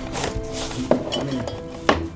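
Background music with sustained tones, over two sharp clinks of film cans being handled on a cart, about a second in and again near the end.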